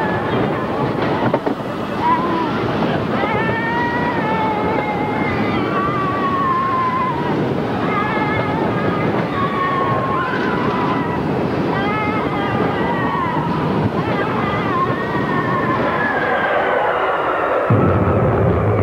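Space Mountain roller coaster train running at speed through the dark: a steady rushing rumble of wheels on track and wind, with riders' wavering yells and whoops over it. Near the end the sound drops into a deeper rumble.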